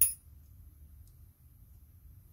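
A single sharp metallic clink with a brief high ring, as small metal parts of a disassembled motorcycle rear brake master cylinder knock together in the hands; a faint tick follows about a second later.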